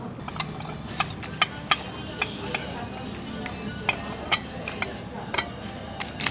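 Dishes and cutlery clinking on a restaurant table, about ten sharp, irregular clinks over a steady murmur of the room.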